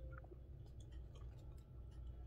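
Faint chewing of a sticky mochi rice cake, with a few soft mouth clicks, over a steady low hum.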